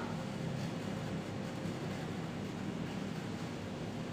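Steady low hum with a light hiss, unchanging throughout: background room noise with no distinct strokes.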